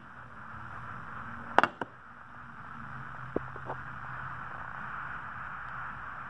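A tint sample plate being handled and set into a solar transmission meter: one sharp knock about a second and a half in, then a couple of faint ticks. Under it runs a steady low hiss and hum of room noise.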